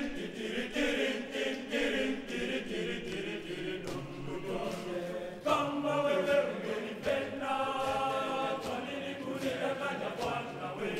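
Boys' high-school choir singing in multi-part harmony, many male voices together; the singing grows louder as higher voices come in about halfway through.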